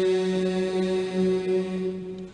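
Male voices of a Mouride kourel chanting an Arabic khassida, holding one long steady note at the end of a line, which fades near the end.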